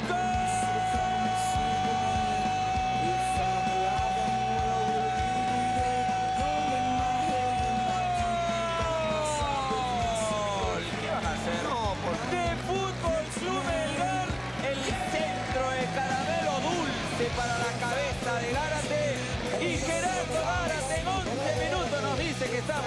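Football commentator's long drawn-out "gol" cry, held on one pitch for about eight seconds and then falling away, over background music. After it, music with singing or shouting voices continues.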